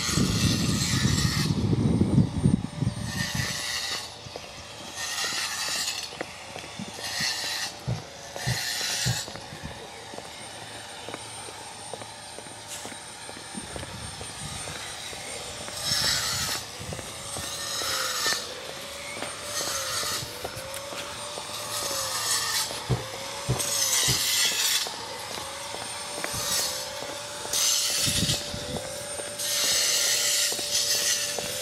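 Footsteps scuffing along a gritty paved path at an even walking pace, about one step a second, fainter for a few seconds midway. A low rumble fills the first few seconds.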